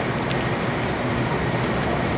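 Steady rushing noise of rooftop ventilation equipment running, with no break or change.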